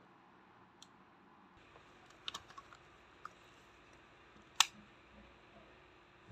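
Small plastic clicks and handling sounds from a mobile-phone battery being taken out and fitted into the clip of a universal battery charger: a few scattered clicks, the sharpest about four and a half seconds in.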